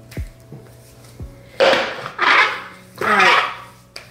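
A bowl set down upside down on a granite countertop, giving a few soft knocks. These are followed by three loud, evenly spaced swishes, like palms rubbed together.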